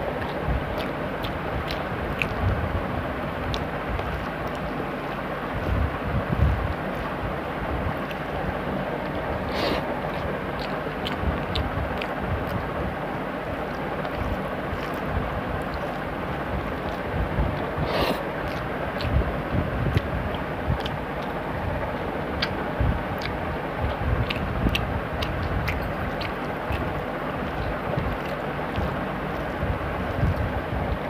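Eating by hand: fingers mixing rice into egg curry on a steel plate and chewing, with scattered soft thumps and a few short clicks over a steady rushing background noise.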